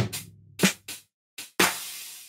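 Programmed hip-hop drum beat at a slow 60 BPM: a kick-drum hit at the start, a snare hit a little past halfway through the first second, and lighter ticks between. A cymbal hit about one and a half seconds in rings on and fades slowly.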